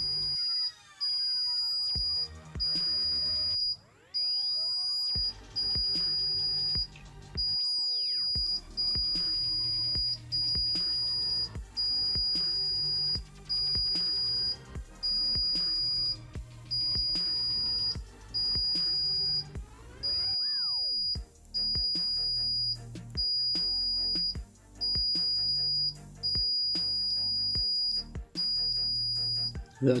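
DT9205A digital multimeter's continuity buzzer giving a long series of short, steady high beeps, about one every one and a half seconds, as the probe steps from bar to bar on a grinder armature's commutator. Each beep marks low resistance, an intact coil between those bars. Background music plays underneath.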